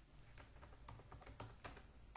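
Faint typing on a computer keyboard: quick, irregular key clicks.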